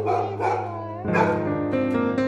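Soft background music of guitar and keys, with a dog whining briefly in the first second.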